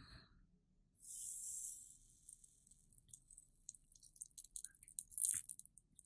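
Flux in copper desoldering braid sizzling as a soldering iron tip heats it on a circuit-board pad: a hiss starting about a second in and lasting about a second, then scattered faint crackles as the solder is wicked off.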